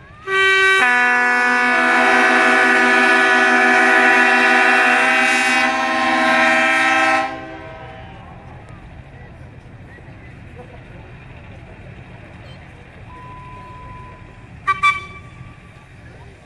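Locomotive air horn sounding a chord of several notes in one long blast of about seven seconds, then two quick short toots near the end.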